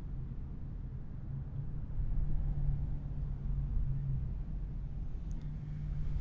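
Steady low hum of room tone, a little louder from about two seconds in, with a couple of faint ticks near the end.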